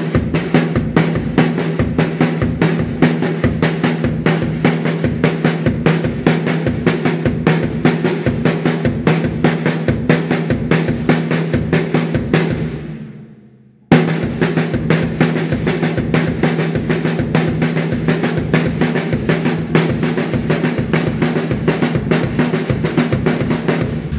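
Acoustic drum kit playing a linear sixteenth-note groove at about 120 bpm: single hand strokes alternate with bass drum kicks, never together, and the kick carries the pattern. This is the basic form of a linear drumming exercise. The playing fades out about 12 seconds in and starts again abruptly just before the 14-second mark.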